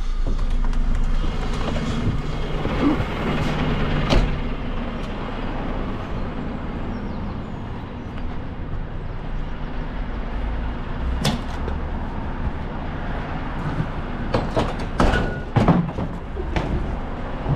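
Renault refuse truck's diesel engine idling with a steady low drone. A sharp knock comes about four seconds in, another about eleven seconds in, and a cluster of knocks and clatters near the end.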